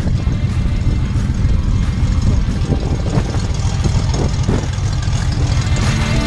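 Single-engine Cessna's propeller engine running as the plane taxis, mixed with a heavy, choppy wind rumble on the microphone.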